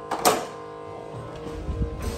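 Soft background music playing, with one sharp kitchen knock or clatter about a quarter of a second in, then a few dull, deep bumps near the end.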